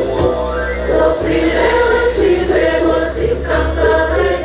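A choir of girls and adults singing a Hebrew song together into microphones, over a steady amplified bass accompaniment, with a drum hit at the very start.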